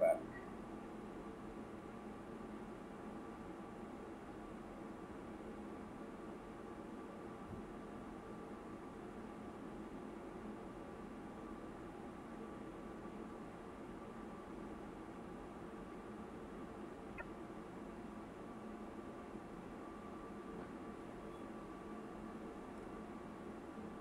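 A faint, steady hum made of several held tones, with a faint tick or two in the middle.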